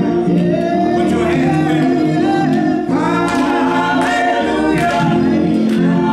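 Two women singing a gospel praise song at microphones over sustained organ chords, their voices held and sliding between notes.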